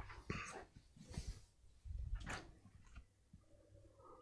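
A few soft, faint rustles and knocks from handling: a flipchart sheet settling and a drink bottle being picked up.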